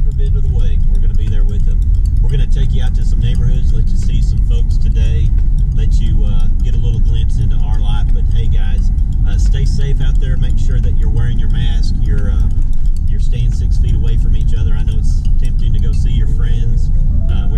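Steady low road and engine rumble inside the cabin of a moving SUV, with voices talking over it.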